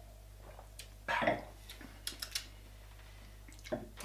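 Quiet beer-tasting handling sounds: a brief murmur about a second in, then a run of small clicks, and a soft knock near the end as a stemmed glass is set down on the wooden table.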